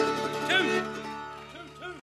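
Bluegrass band playing the close of a song: the final chord rings on and fades out, with a few sliding notes over it.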